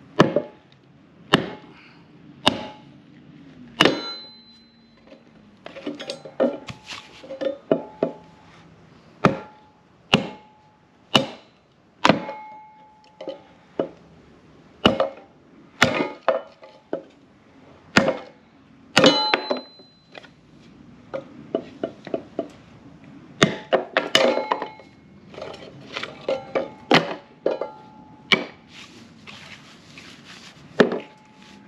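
Small sledgehammer striking a log seated in a cast-iron kindling splitter, splitting it into kindling. Sharp strikes come about once a second, some with a short ringing tone, with quicker, lighter knocks in the last third.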